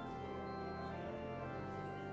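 Church organ playing the postlude in sustained chords, the harmony shifting about a second in and again shortly before the end.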